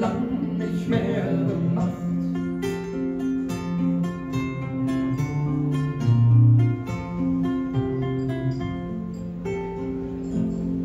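Two acoustic guitars playing an instrumental break together: a quick run of picked melody notes over sustained chords.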